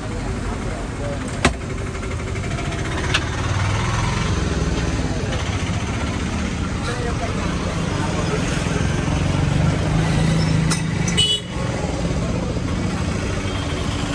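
Busy street traffic: vehicle engines running and horns sounding, with voices. A sharp click about a second and a half in and a smaller one about three seconds in.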